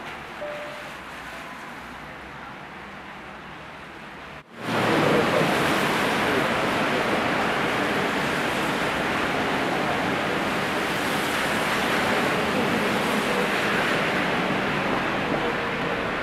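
A faint piano note over low background noise, then about four and a half seconds in a loud, steady rushing noise starts suddenly and carries on.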